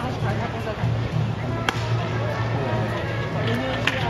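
Ballpark ambience heard from the stands: music and crowd voices, with two sharp clacks, one a little under two seconds in and one near the end.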